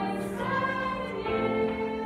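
School chamber choir singing sustained chords, moving to a new chord about halfway through.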